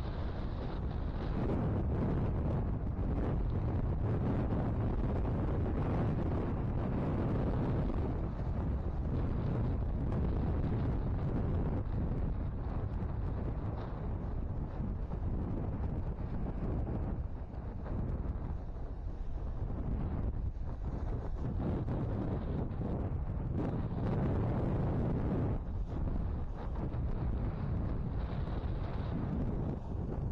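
Wind rumbling steadily on the microphone, with waves breaking on the shore beneath it.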